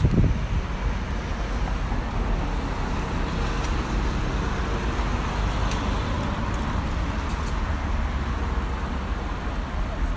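Steady city street traffic noise, an even wash of passing cars with a low rumble underneath.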